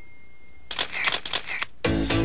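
Rapid run of camera shutter clicks, several a second for about a second, as a title-card sound effect; music starts just before the end.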